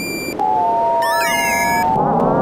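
Artikulator iPad app playing back a drawn composition as synthetic gliding tones. About half a second in, two tones at nearly the same pitch split apart and close back together, and a cluster of higher wavering tones sounds briefly partway through. A rough low drone runs underneath.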